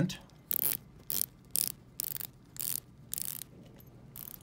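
The Seiko Prospex SLA035 dive watch's 120-click rotating bezel being turned by hand in about six short runs of fine, subtle clicks, roughly half a second apart. The clicks are crisp and well sprung, each detent distinct.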